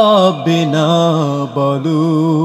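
A male voice singing a Bengali gojol (Islamic devotional song), drawing out a long held note that wavers slightly, after a falling phrase at the start, with a brief break about one and a half seconds in.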